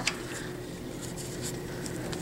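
Quiet, steady hum of a small electric fan heater (Jamberry Mini Heater) running.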